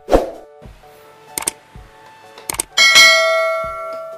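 Subscribe-button animation sound effects: a sharp burst at the start, two clicks, then a bell ding about three seconds in that rings on and fades.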